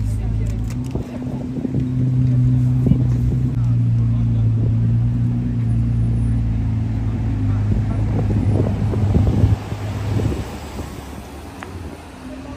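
A car engine running steadily at low revs, a deep even hum that fades out about ten seconds in, with voices nearby.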